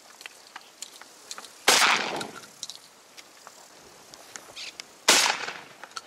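Two shotgun shots about three and a half seconds apart, each trailing off over about half a second.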